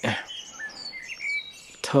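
Birds chirping: a few faint, short, high chirps and brief whistled glides.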